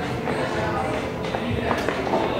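Indistinct background voices in a large gym hall, with faint music and a couple of light knocks near the end.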